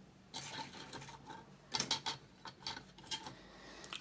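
Plastic model kit parts and sprues handled on a cutting mat: scattered light clicks and rattles, with a small cluster of knocks about halfway through.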